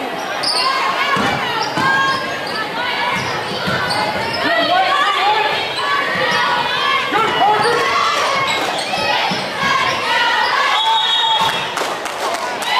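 Basketball dribbled on a hardwood gym floor, with many spectators' voices chattering and calling out in the echoing gym.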